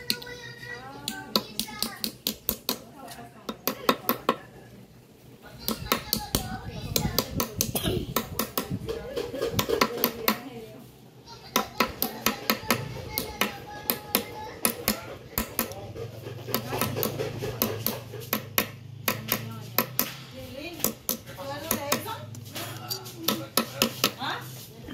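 Back of a hatchet hammering a metal bottle cap flat on a wooden stump: rapid runs of sharp metal-on-wood taps, a few a second, broken by short pauses.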